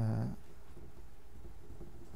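A man's short hesitation sound, "uh", right at the start, then steady low room hum in a lecture room.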